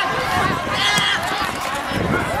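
Teenage footballers and onlookers shouting and calling out during play on an outdoor pitch, with one higher shout about a second in.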